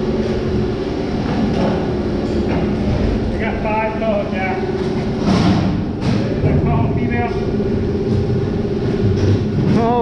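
Steady machinery hum in a fish-handling room, with a few thumps of salmon being handled on a stainless steel sorting table, the loudest about five seconds in.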